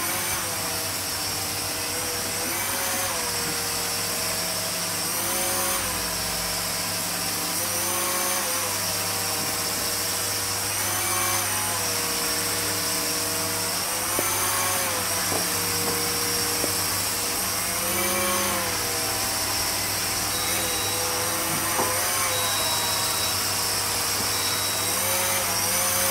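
Air Hogs Vectron Wave toy flying saucer hovering, its small electric propeller motor whining steadily. The pitch rises briefly and settles back every few seconds as the motor speeds up to hold its height.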